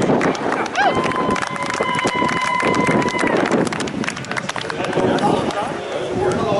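Applause: many hands clapping in a dense, continuous patter. A steady high tone sounds over it from about a second in, for over two seconds.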